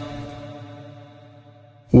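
Chanted Quranic recitation in Arabic: the held last note of a phrase dies away in echo over almost two seconds, and the next phrase starts sharply right at the end.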